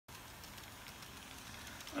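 N-scale model train, a locomotive pulling lighted passenger cars, running on the track: a faint, steady running noise from its small motor and wheels on the rails.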